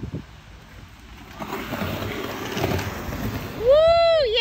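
Skateboard wheels rolling on a concrete skatepark bowl, a rough rumbling noise that grows louder. Near the end a loud, high-pitched whooping cheer cuts in.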